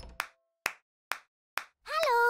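The fading tail of a final musical hit, then four short, sharp clap-like clicks evenly spaced about half a second apart, with silence between them, in the gap between two animated children's songs. A child's voice starts just at the end.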